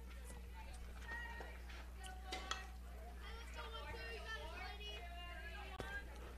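Faint, distant voices of players and spectators at a softball field: chatter and calls heard under a steady low hum, with a few small clicks.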